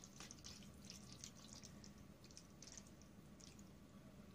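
Faint scattered clicks and scrapes of a metal fork stirring saucy fettuccine in a plastic tray.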